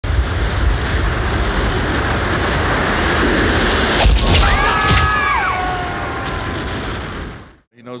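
Animated channel-intro sound effects: a loud, long rushing rumble, two sharp hits about four and five seconds in, and a few held tones that slide downward. It all fades out quickly shortly before the end.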